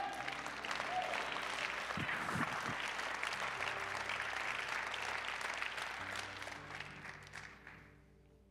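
Congregation applauding, the clapping dying away near the end, with a few soft held musical notes underneath.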